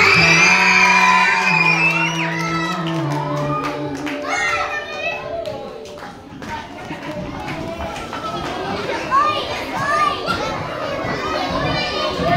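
Music with long held notes stops about four seconds in, and a crowd of children chattering and shouting in a large hall takes over.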